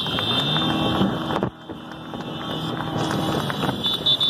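Vehicle engines running in slow street traffic, with wind buffeting the microphone, over a steady high-pitched whine.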